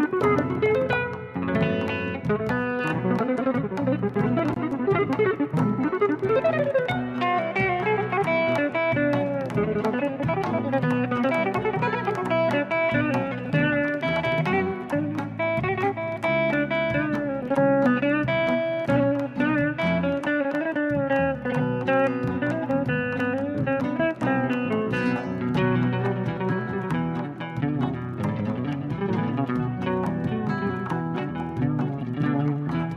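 Fretless electric guitar playing a melody live, with notes that slide and bend in pitch, over a steady lower accompaniment.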